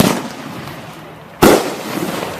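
After Shock aerial firework firing a shot. A sharp launch report comes first, then about a second and a half later a louder bang as the shell bursts overhead, each trailing off.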